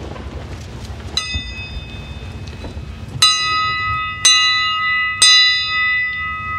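A bell struck once lightly, then three times about a second apart, each strike left ringing with several clear overlapping tones that carry on.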